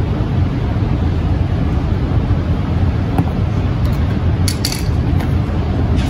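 Steady low room hum, with a few sharp metallic clinks about four and a half seconds in as a metal can of screen-printing ink is set down on a glass-topped work table.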